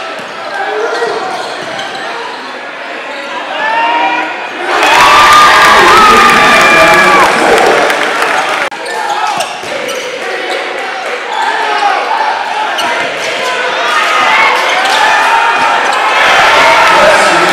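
Basketball game sound in a gym hall: a ball bouncing on the court under a crowd's shouting and chatter. The crowd noise jumps loud about five seconds in and cuts off suddenly a few seconds later.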